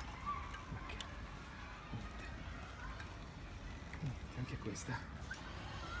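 Outdoor street background with faint, brief fragments of a low voice and a few light clicks.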